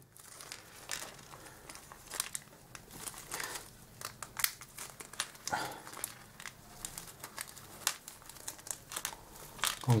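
Small clear plastic parts bag crinkling as it is handled and opened to get screws out, a run of irregular light crackles.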